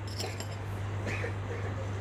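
A steady low hum, with a few faint light clinks of a metal spoon at a glass of milky ginger tea just before it is stirred.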